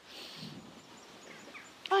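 Faint outdoor background with a few faint high chirps, then a woman's voice starts a drawn-out, falling "I" just before the end.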